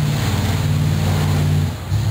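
A noisy car driving past, its engine a loud, steady low drone that shifts slightly in pitch about half a second in and falls away near the end.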